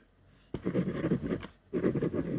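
Ballpoint pen writing on white paper on a desk: a short pause, then a quick run of scratchy strokes about half a second in, a brief gap, and the strokes starting again near the end.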